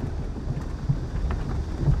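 A low, steady rumble with no clear pitch, sitting under a faint hiss.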